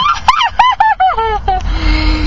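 High-pitched human laughter: a quick run of about seven falling 'ha' calls, each lower than the last. Near the end a steady held tone takes over.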